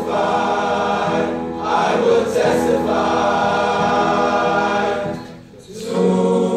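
Male choir singing a gospel song in sustained chords, pausing briefly near the end before the next phrase.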